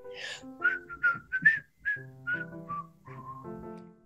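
A cheerful whistled melody of short, sliding notes over soft keyboard chords: a children's-show jingle. A brief swish opens it.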